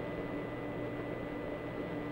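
Steady hiss and hum with a faint constant high tone, and no distinct events.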